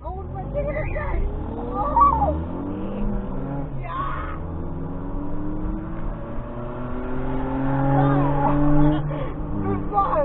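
Car engine accelerating hard from a standstill: the revs climb, break at a gear change about four seconds in, then climb again in the next gear.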